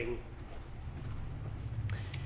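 A brief pause in the talk: a steady low room hum with a few faint clicks, one near the end.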